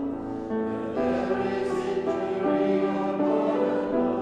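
Mixed church choir singing a worship song in harmony, holding sustained chord notes that change every second or so, with piano accompaniment.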